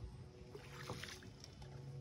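Faint water sounds around a canoe on calm water: a soft swish about half a second to a second in, with a few small clicks. A low steady hum comes in near the end.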